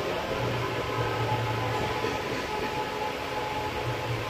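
Steady hiss with a low, even hum underneath: background room noise, with no voice.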